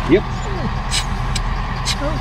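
Onboard air compressor for a truck's rear air-spring suspension running steadily while its inflate switch is held, pumping the airbags up toward about 65 psi. A few short sharp clicks come about a second in and near the end.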